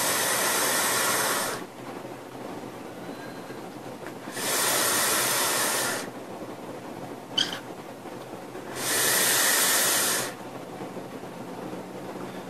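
Three draws on a Fishbone rebuildable dripping atomizer (RDA) vape, each a rushing hiss of about a second and a half as air is pulled through its large airholes past the firing coil.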